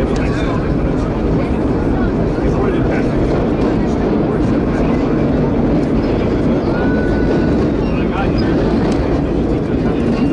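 Vintage R1-9 subway train running from a station into the tunnel: a loud, steady rumble of wheels on rail and the running gear, echoing in the tunnel. A brief high steady tone sounds about seven seconds in.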